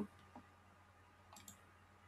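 Near silence with a few faint computer mouse clicks: a soft one about a third of a second in and a quick pair near the end.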